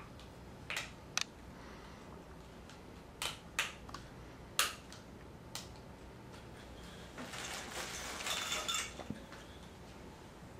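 Plastic parts of a Venturi air entrainment oxygen mask being fitted together by hand: about six sharp clicks and snaps over the first six seconds, then nearly two seconds of crinkly plastic rustling near the end.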